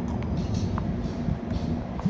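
City street traffic noise with music playing over it.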